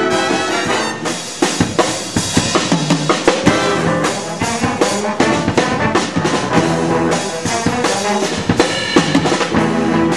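Live jazz big band playing: saxophone, trumpet and trombone sections over a drum kit, with sharp drum hits and accents coming thick from about a second in.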